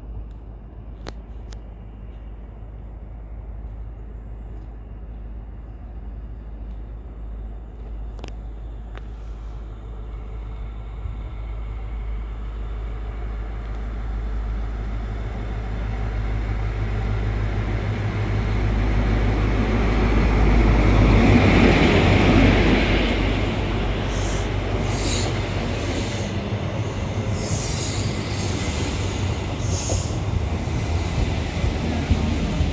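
An HST diesel train approaches and runs in alongside the platform. Its low engine rumble grows steadily louder to a peak about 21–22 s in as the front power car draws level. The coaches then roll past with repeated short, high-pitched squeals from the wheels.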